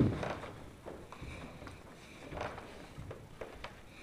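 Bare feet stepping and sliding on a wooden floor in karate sparring: a loud thud right at the start, then scattered light taps and shuffles.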